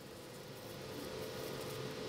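Quiet workshop room tone: a faint, steady hum with one steady mid-pitched tone, slowly getting a little louder.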